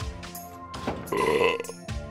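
A man belching loudly once, about a second in, lasting most of a second, over background music.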